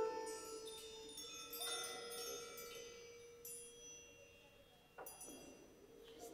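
Struck metal chimes ringing: a few strokes roughly every second and a half, each leaving clear high notes that hang on and overlap as they fade, the first the loudest.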